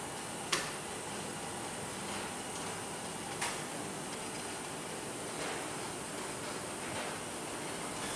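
Steady hiss of an automated surgical-instrument washer line, with water spraying in the rinse tank. Two sharp metallic clicks sound, one about half a second in and a fainter one about three and a half seconds in, as a robot arm handles a wire-mesh basket of instruments.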